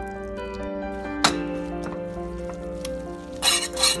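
Background music with slow held notes, over which a metal spatula clinks against a metal pot once about a second in, then scrapes and stirs in a quick flurry near the end as it mixes the noodles and greens.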